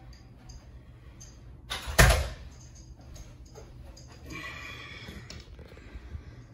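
Carpet power stretcher being handled: one loud, sharp clack about two seconds in, then about a second of rustling and scraping.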